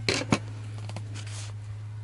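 Handling of a small ice-fishing rod and tackle: two or three sharp clicks near the start, then a soft rustle, over a steady low hum.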